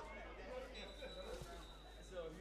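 Faint voices of players and spectators at an outdoor football ground, with a thin steady high tone held for just over a second in the latter part.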